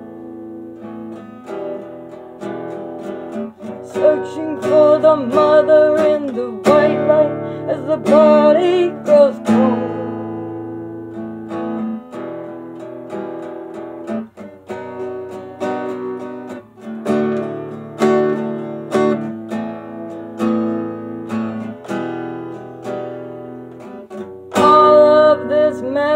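Acoustic guitar played in a song accompaniment, chords strummed and picked steadily. A singing voice rises over it in stretches, loudest about four seconds in and again near the end.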